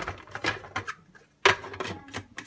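A few scattered clicks and knocks of kitchen things being handled, with a sharper knock about one and a half seconds in.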